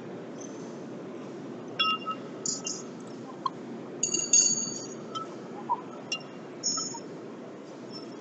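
Light metal clinks and short ringing pings as lug nuts and hand tools are handled at a steel truck wheel, over a steady background noise. The clinks start about two seconds in, are loudest a little after four seconds, and come more sparsely until about seven seconds.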